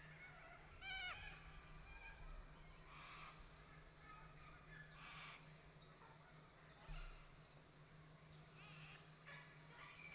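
Faint wild bird calls: a short run of harsh, quick notes about a second in, then scattered thin high chirps, over a steady faint low hum. A soft low thump sounds about seven seconds in.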